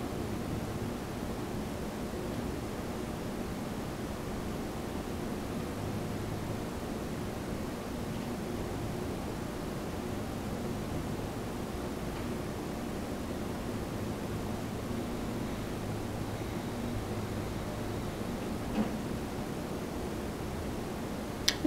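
Steady room tone: an even hiss with a faint low hum, and one small click near the end.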